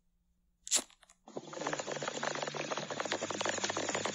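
A short scratchy click about a second in, then a dense, fine crackling that slowly grows louder, with a faint low hum beneath it.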